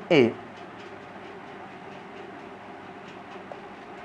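A man's voice says one short word, then a steady low background hum and hiss runs on with nothing else in it.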